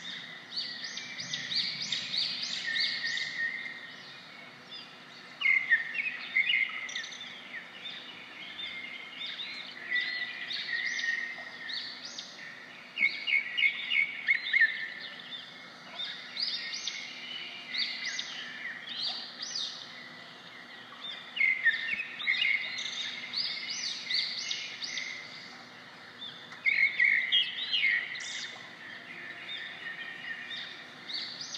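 Small birds singing, with bouts of quick, high chirping notes recurring every few seconds over a steady faint outdoor background.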